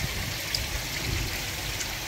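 Water trickling and splashing steadily in koi tanks that are fed by filters and bakki showers.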